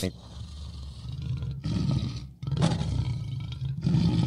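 A deep lion-roar sound effect played as a transition into the break, in three stretches of low growling with short gaps between them.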